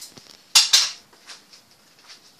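Two sharp clatters of kitchenware in quick succession, about half a second in, followed by a few faint clicks.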